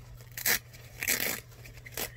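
Two short rustles of lace fabric being handled and pulled at, one about half a second in and a longer one just after a second in.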